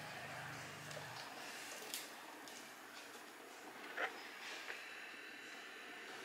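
Handheld butane gas torch burning with a faint steady hiss, with a few soft taps from the plastic pipe and fitting being handled and pushed together. A low hum underneath stops about a second in.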